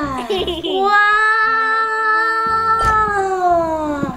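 A woman's voice exclaiming a long, drawn-out "wooaaah" (우와아아아), held on one high pitch for about three seconds and falling away near the end, after a short sliding "wow" at the start.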